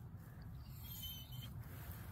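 Faint outdoor ambience before dawn: a low rumble, most likely light wind on the microphone, with a brief faint high-pitched sound near the middle.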